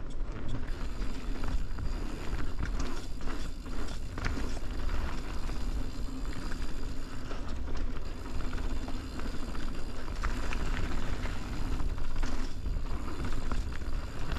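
Mountain bike riding down dirt singletrack: a steady rush and low rumble of tyres rolling over dirt and fallen leaves, with frequent small clicks and rattles from the bike.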